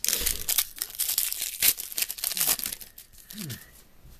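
A plastic-wrapped trading card pack being torn open, the wrapper tearing and crinkling in a quick run of loud rustles for about two and a half seconds before it dies down.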